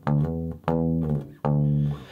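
Electric bass guitar plucked three times, each note ringing and dying away, about three-quarters of a second apart. The signal is coming through again after a fault that turned out to be in the lead, not the bass.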